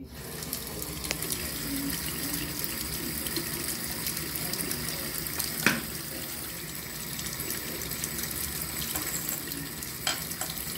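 Bathroom faucet turned on, its flow starting abruptly as the lever is lifted, then water running steadily from the spout into the sink basin. A single sharp knock sounds a little over halfway through.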